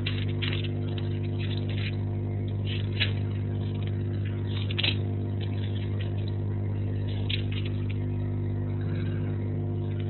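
A steady low hum with a stack of evenly spaced overtones, unchanging in pitch and level, with a few faint clicks about three and five seconds in.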